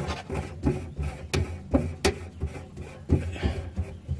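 Metal CNG fuel filter canister being threaded back onto its housing by hand: irregular light clicks and taps of metal and fingers, with two sharper ticks about one and two seconds in.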